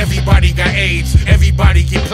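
Hip hop track: a vocal over a drum beat with a heavy, steady bass line.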